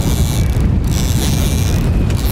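Wind buffeting the microphone: a loud, low, steady rumble, with a faint thin whine above it.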